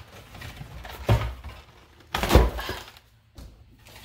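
Two dull thumps about a second apart, the second louder, from things being handled and set down in a kitchen.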